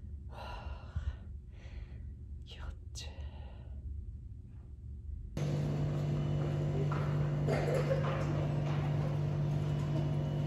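A man whispering and sighing in short bursts, then a sudden change about five seconds in to a steady low hum with indistinct voices in the background.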